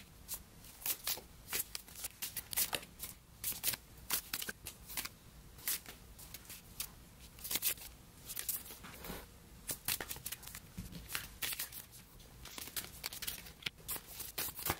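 Tarot cards being dealt one at a time from a deck and laid onto a table: quick, irregular clicks and slides of card stock, a few each second.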